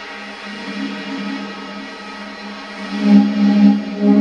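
Free-improvised music from saxophone and percussion: one sustained, droning pitch with overtones that swells louder about three seconds in.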